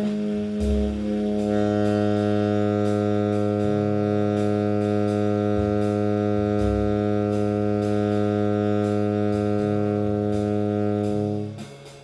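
Tenor saxophone holding one low long tone steady for about eleven seconds, its sound brightening about a second and a half in and stopping shortly before the end. Underneath, a play-along of plucked double bass changing notes and drums with light cymbal strokes carries on.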